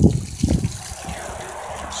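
Stream of water from a garden hose spraying and splashing against house siding and the ground, a steady hiss, with a couple of low bumps near the start.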